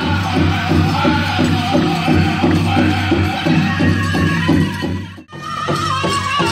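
Powwow drum group: a big drum struck in a steady, even beat under loud group singing. The sound drops out briefly about five seconds in, and another song picks up with higher-pitched singing over the drum.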